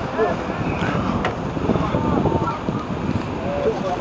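Wind rumbling on the microphone, with indistinct shouts and calls from footballers across the pitch, and a single sharp knock about a second in.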